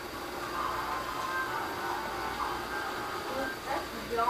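Water boiling in a covered stainless pan of artichokes on a gas stove, a steady noise throughout.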